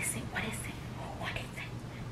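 Faint whispering: a few short, breathy sounds over a low steady room hum.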